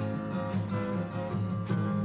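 Acoustic guitar strummed, ringing chords with repeated strokes.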